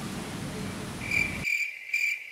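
Low room noise, then about a second in a cricket-chirping sound effect starts: a steady high trill. The background drops out suddenly under it, as if laid in during editing.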